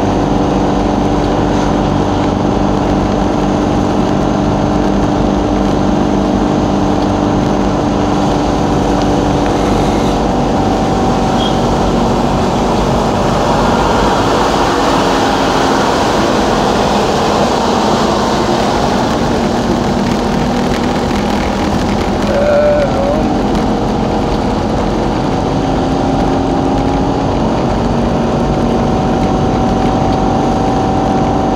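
Steady engine drone and road noise inside the cabin of a moving vehicle cruising at an even speed, with tyre hiss that grows a little busier midway.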